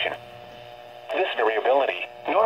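NOAA Weather Radio broadcast voice reading the weekly test message through a Midland weather radio's small speaker. About a second in, the voice pauses between phrases, and a faint steady buzz from the receiver fills the gap before the voice resumes.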